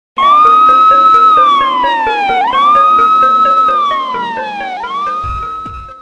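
News-channel intro sting: a loud siren-like tone swoops up, holds and slides down twice, then rises a third time, over a fast ticking beat, fading out toward the end.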